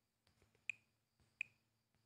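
Near silence with two sharp, short clicks about 0.7 seconds apart, over a faint low hum.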